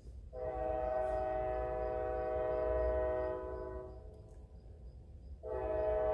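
Train horn sounding two long blasts, each a steady chord of several notes held together: the first lasts about three and a half seconds, the second begins near the end.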